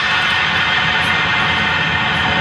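Acoustic drum kit played along to an electronic dance backing track: a fast, dense run of drum strokes under a continuous cymbal wash.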